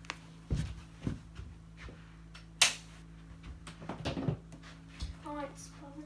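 A few dull thumps from a phone being carried about, then a single sharp click about two and a half seconds in: a light switch being turned off. A low steady hum runs underneath.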